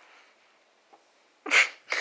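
A person sneezing once, loud and sudden, about a second and a half in, with a second noisy burst starting just before the end.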